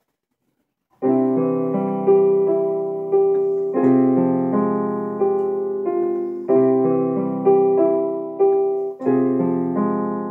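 Digital piano starting the opening bars of a slow piece about a second in. Sustained chords come in, a new one about every second, with a stronger accent starting each phrase every two to three seconds.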